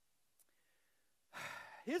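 A man's audible breath, a short sigh-like rush of air into the microphone about a second and a half in, after a brief hush with one faint click. It runs straight into speech.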